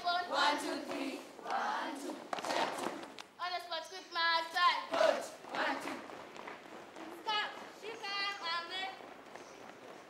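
A large group of children singing and chanting together in short phrases, high sung lines alternating with spoken-sounding passages.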